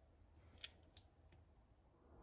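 Near silence: room tone, broken by three faint short clicks between about half a second and a second and a half in.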